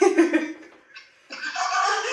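A woman laughing briefly, then after a short pause more breathy laughter or voice near the end.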